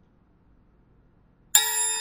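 Near silence, then about one and a half seconds in a computer's alert chime: a sudden bright ding of several pitches at once that keeps ringing, marking the finish of the simulation run.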